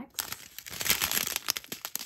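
Small clear plastic bags of diamond painting drills crinkling as they are handled, an irregular run of crackles that is loudest about a second in.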